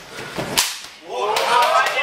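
A single sharp smack of a sparring blow landing about half a second in, followed by men's voices shouting.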